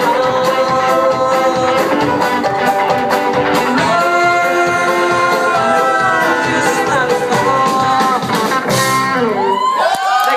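Live band playing a song: a man singing over acoustic and electric guitars, bass and drums. The band stops near the end, leaving the last notes ringing.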